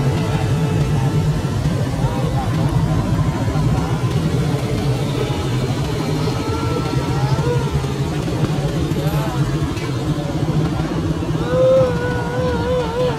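Steady low rumble of vehicle engines, with a voice now and then rising and falling in long, wavering drawn-out calls.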